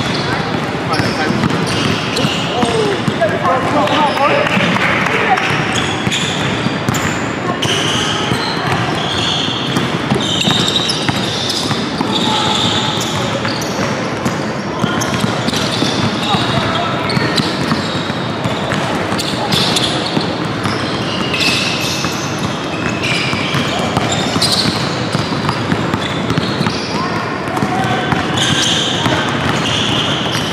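Several basketballs dribbling on a hardwood gym floor in many overlapping bounces, with short high squeaks of sneakers as players cut, echoing in a large gym hall. Voices are heard in the background.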